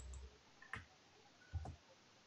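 Faint clicking at a computer while a SUM formula is entered into a spreadsheet: a soft low thump at the start, then two short sharp clicks about a second apart.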